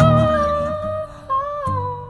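A young woman's voice singing two long held notes, the second sliding down a little, over acoustic guitar with a strum about three quarters of the way through.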